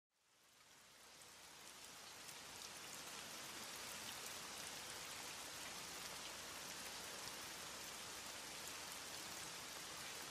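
Soft, steady rain: an even hiss with faint scattered drop ticks, fading in from silence over the first two to three seconds.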